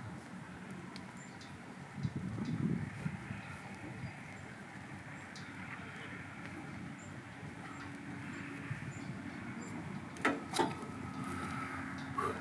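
Quiet outdoor background with faint, scattered sounds, and two sharp thumps about ten seconds in: a person dropping down from a hanging kite bar and landing on his feet.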